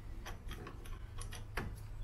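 A few faint, scattered clicks as the cooling system's pressure cap is set back onto the filler neck and twisted on.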